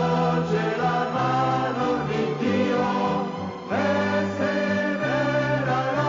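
Choir singing an Italian religious hymn in long held phrases, with a short break between phrases about three and a half seconds in.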